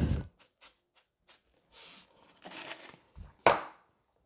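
A salt shaker shaken over a saucepan: a few light ticks and soft rustling grains, then one sharp knock about three and a half seconds in.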